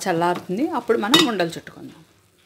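A wooden spatula stirring a coconut and jaggery mixture in a metal pot, with a sharp scrape or clink against the pot about a second in. A woman's voice talks over it.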